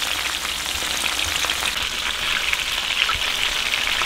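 Flour-coated raccoon pieces frying in hot oil in a cast-iron skillet: a steady sizzle with small crackling pops of spattering oil.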